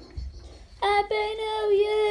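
A child's voice holding one long, steady sung note that starts a little under halfway in, after a moment of quiet.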